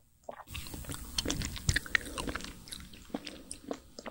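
Close-miked biting and chewing of an Okdongja ice cream bar, a vanilla bar in a white milk coating over a dark chocolate shell: a dense run of wet crackles and crunches with mouth sounds. It starts about half a second in and is loudest in the middle.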